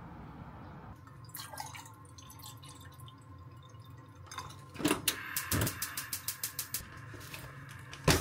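Water poured from a plastic bottle into a stainless steel saucepan, glugging out of the bottle in a quick, regular run of pulses, about five a second, for a couple of seconds.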